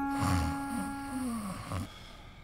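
A sleeping person snoring: a rough, low snore about a quarter second in, trailing off into a breathy exhale, over a held note of soft background music that fades about a second in.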